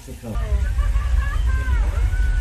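Deep, steady rumble that sets in suddenly about a third of a second in, as a theme-park flash flood special effect starts releasing water down a village street set. Voices exclaim over it.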